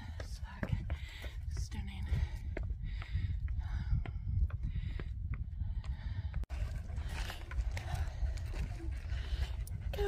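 Wind buffeting the phone's microphone in a steady low rumble, with scattered clicks of footsteps on a stony hill path.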